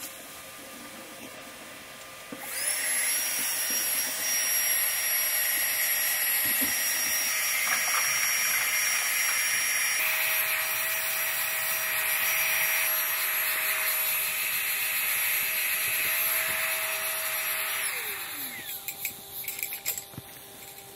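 Small battery-powered electric air pump inflating a sleeping pad, running with a loud, steady high whine. It starts about two seconds in and is switched off near the end, its motor winding down in a falling pitch, followed by a few handling knocks.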